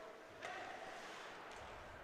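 Faint ice-rink ambience during play: a soft, steady hiss that picks up slightly about half a second in.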